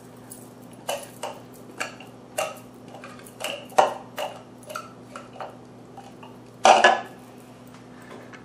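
Irregular clicks and knocks of a spatula against a small plastic food-processor bowl as dressing is scraped and poured out of it, about one or two a second. A louder clatter comes about seven seconds in.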